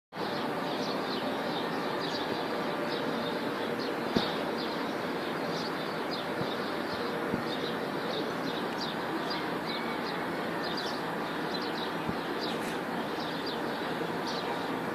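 Steady hum of city traffic heard from above the city, with small birds chirping over it in short high calls throughout. A sharp tap about four seconds in, and another near seven seconds.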